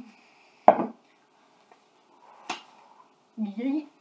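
A single sharp knock a little under a second in, then a fainter click around the middle, as a cup is handled during the game; a short burst of speech near the end.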